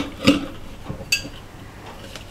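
Light clicks and taps of a plastic Zappa bottle-cap launcher opener being fitted onto a glass bottle's crown cap, with one sharp click about a second in.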